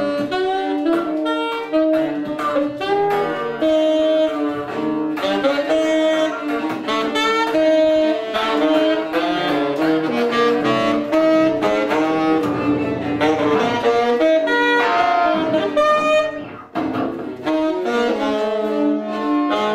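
Free-improvised trio music: saxophone playing busy lines of short notes over bowed cello and electric guitar, with a brief drop in loudness near the end.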